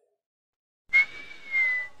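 Silence for the first second, then a single high whistled note held for about a second, sliding slightly down in pitch.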